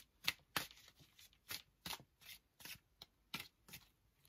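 A Klimt Tarot deck shuffled overhand, one packet dropped onto the other: a run of short, papery card slaps, about two a second.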